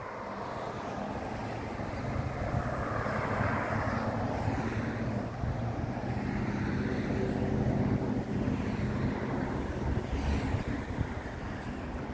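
Road traffic: cars passing on the road, tyre noise swelling about three seconds in, and a steady engine hum through the middle, with wind on the microphone.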